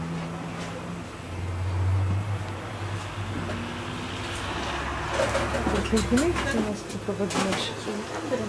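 Low engine rumble of a road vehicle on the street, swelling about a second in and dying away near the end, with indistinct voices over it in the second half.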